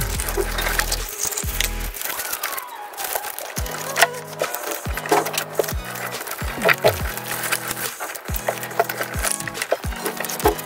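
Clear plastic slime jars handled and pressed into glitter slime, giving sticky clicks and crackles, over background music with a stepped bass line.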